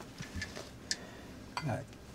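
A glass water jug being handled on a table: small ticks and one sharp clink about a second in, over quiet room tone. A brief murmured voice comes near the end.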